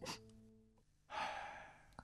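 A person's soft, breathy sigh about a second in, fading away over most of a second. Before it, the held notes of background music die out, with a brief click at the very start.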